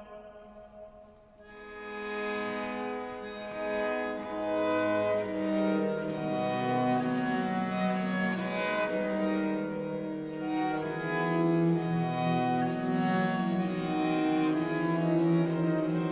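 Instrumental interlude of Reformation-period music: several bowed string instruments playing sustained interweaving lines, coming in about a second and a half in and continuing at a steady level.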